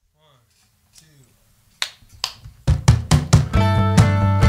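A band starts a song on strummed acoustic guitars and electric bass. There is a faint voice briefly at first, then two sharp clicks, and the strummed chords come in rhythmically under three seconds in, building to the full band.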